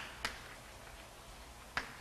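Chalk tapping on a blackboard as it writes: two short, sharp taps, one shortly after the start and one near the end, over faint room hiss.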